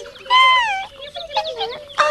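A high, squeaky cartoon-character vocalisation: one gliding call about half a second long, then a few short chirps, over a steady held tone.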